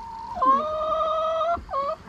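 An animal's drawn-out call, held about a second on a fairly even pitch with a slight rise at the start, then a short second call near the end.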